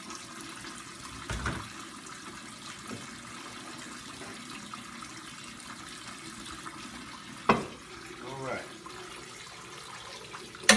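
Kitchen faucet running steadily into an enamelled pot in a stainless steel sink, filling the pot of chitterlings with cold water. A single sharp knock comes about seven and a half seconds in.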